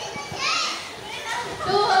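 A group of people, children's voices among them, shouting and calling out excitedly. There are high-pitched cries about half a second in and again near the end.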